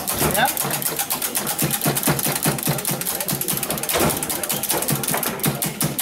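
Foosball table in play: a rapid run of hard plastic clacks, about seven a second, as the ball is knocked between the figures and the rods hit the table. A couple of louder knocks come about four and five seconds in.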